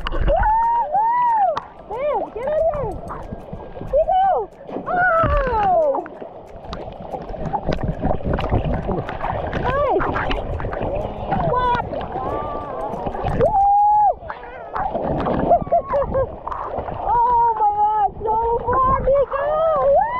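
Excited voices yelling and squealing, with rising and falling calls throughout, over water splashing and sloshing around a camera held at the water's surface.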